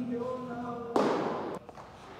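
A pitched baseball smacking into the catcher's mitt about a second in: one sharp pop with a brief ring-out.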